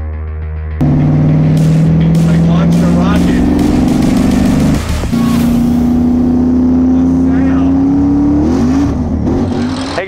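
A car engine revving hard with a slowly rising pitch, broken off about five seconds in, then rising again for a few more seconds.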